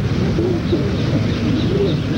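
Birds calling: short high chirps repeating a few times a second, with lower wavering calls, over a steady hiss.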